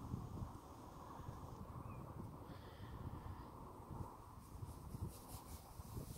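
Faint, steady outdoor background noise, mostly a low rumble, with no distinct sound event.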